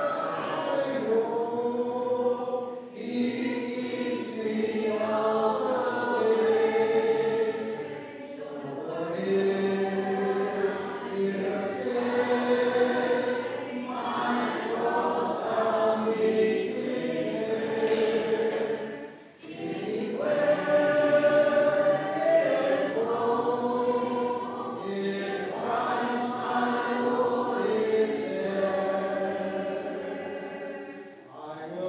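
Church congregation singing a hymn a cappella in parts, with brief dips in sound between phrases.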